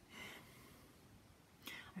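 Near silence broken by a woman's soft breath just after the start and a quick intake of breath near the end, just before she speaks again.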